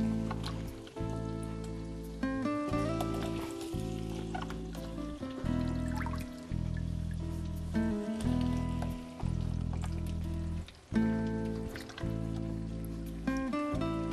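Background music of held notes and chords, changing about once a second.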